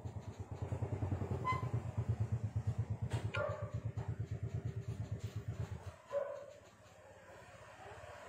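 A small engine idling with a fast, even low throb that cuts off abruptly about six seconds in. A few faint short higher sounds come over it.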